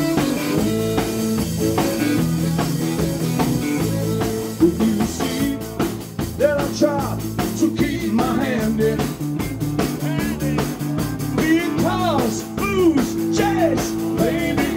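Live blues-rock band playing an instrumental break: electric guitar, bass guitar and drum kit with harmonica. The cymbals get busier about five seconds in, and a lead line of bending, sliding notes runs over the band from then on.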